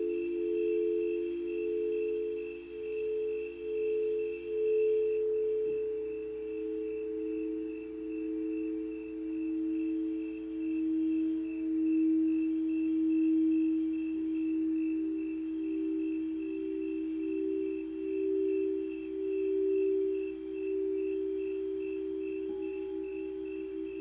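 Singing bowls ringing together: several sustained, overlapping pure tones with a slow pulsing wobble. A new note comes in about five seconds in, and another around fourteen seconds.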